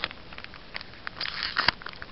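Pokémon trading cards being handled close to the microphone: scattered rustles and light clicks, busier in the second half, with one sharper click near the end.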